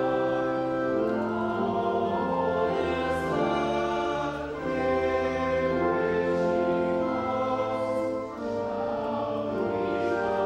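Pipe organ playing a hymn in long held chords, with voices singing along; the sound drops briefly between phrases about four and a half and eight seconds in.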